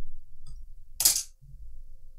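A single short, sharp hiss about a second in, over a low rumble.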